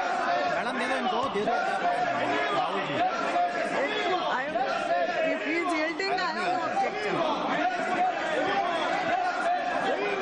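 Many people talking over one another in a large chamber, a dense babble of voices with no single speaker clear.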